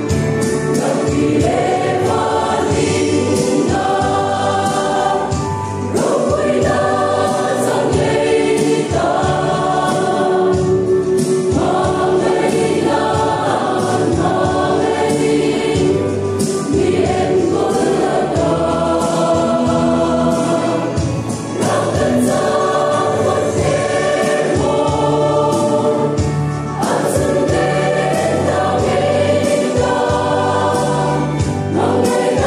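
Mixed choir of women and men singing a Christian song in harmony, in long sustained phrases with short breaths between them.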